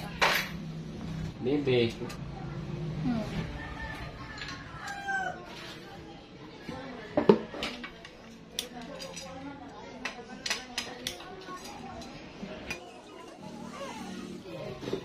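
Metal hand tools clicking and clinking on a motorcycle engine's clutch side, the loudest a sharp clink about seven seconds in, followed by a run of lighter clicks. A rooster crows and chickens cluck in the background during the first few seconds.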